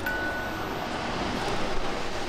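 Steady rushing of a fast-flowing river. A faint held tone stops about a second in.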